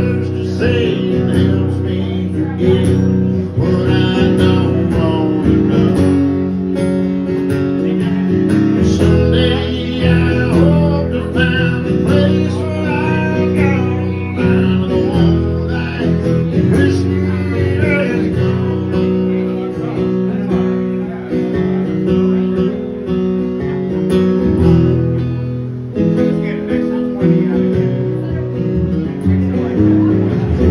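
A man singing a country song live, accompanying himself on a strummed acoustic guitar.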